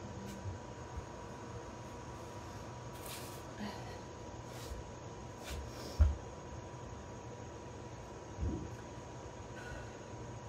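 Quiet rest between kettlebell sets: a person breathing softly over steady room noise with a faint steady tone, a dull thud on the rubber floor mat about six seconds in and a smaller thump near the end.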